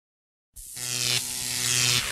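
A steady, low-pitched electronic buzz that starts about half a second in and swells in loudness, like an intro drone fading in.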